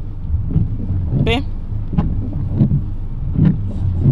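Car engine running with a steady low rumble, heard from inside the cabin.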